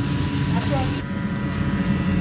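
Food sizzling on a hot flat-top griddle, a bright hiss that cuts off abruptly about a second in, over the steady hum of a kitchen extractor fan.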